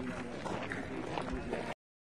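Indistinct background talk of several people, with a steady murmur behind it. The sound cuts to dead silence shortly before the end, at an edit.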